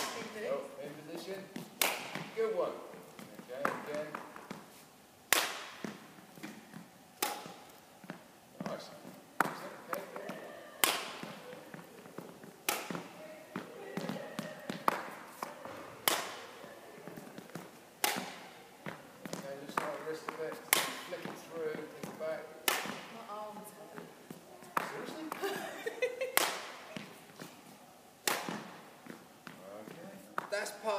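Badminton racket striking shuttlecocks again and again, a sharp crack about every two seconds with a short echo off the sports hall walls. Faint voices between the hits.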